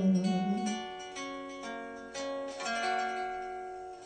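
Instrumental fill in a bolero: plucked acoustic guitar playing a short run of single notes between sung lines. A held sung note tails off about half a second in.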